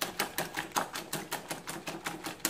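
Wire whisk beating eggs in a glass mixing bowl, its wires clicking against the glass in a steady rhythm of about six strokes a second.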